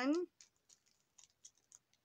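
Plastic packaging of a diamond painting kit being handled: a few faint, scattered clicks and crinkles after a word ends.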